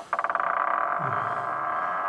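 Eerie horror soundtrack effect: a fast stuttering tone that settles into a steady, high, droning chord, with a low sliding voice-like sound about a second in.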